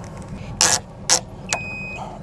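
Bike rack frame clamp being worked onto an e-bike frame: two short sharp clicks and a brief thin squeak, over a steady low hum.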